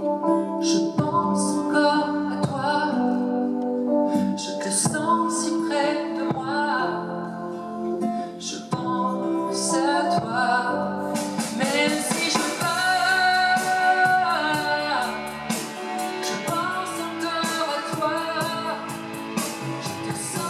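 A male singer singing a French ballad live into a handheld microphone over instrumental accompaniment, which becomes fuller and brighter about eleven seconds in.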